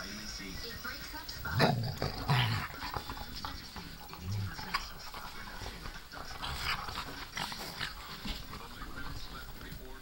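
Small dogs playing with a piglet on a couch: two short growls about two seconds in, a shorter low grunt a little later, and rustling and small clicks of movement throughout.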